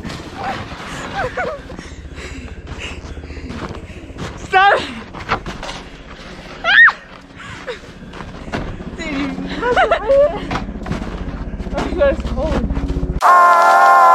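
People shrieking and laughing, with short knocks of plastic snow sleds being struck together. Music starts abruptly near the end.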